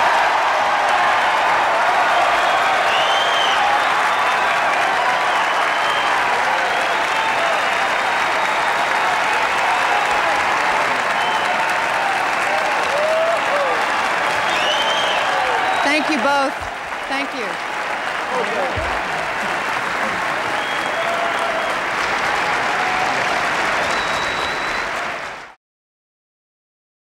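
Large hall audience applauding steadily, with a few scattered cheers over it. It eases a little about two-thirds of the way through, then cuts off suddenly near the end.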